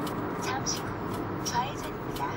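Steady road and engine noise inside a moving car, with a faint voice speaking over it from about half a second in.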